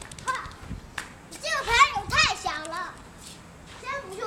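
A young child's high-pitched voice calling out in wordless play cries, a short one near the start and a louder run of rising and falling calls in the middle.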